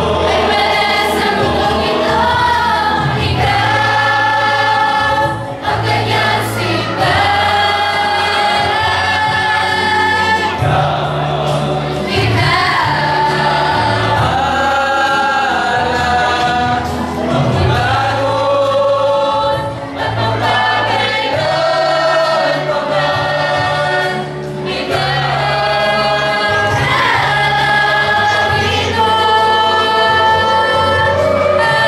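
A mixed choir of young men and women singing together in long held phrases, with short breaks between phrases.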